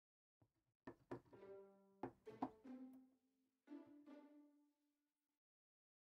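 Audio Imperia AREIA sampled strings in Kontakt playing a short phrase of short, detached notes from a keyboard, heard faintly. There are about five note attacks over a few seconds, and the last note rings a little longer before fading.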